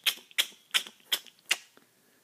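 A run of short, sharp clicks, about five of them, evenly spaced at roughly two and a half a second.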